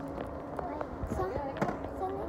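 Faint voices with a few sharp clicks from the phone being handled and moved.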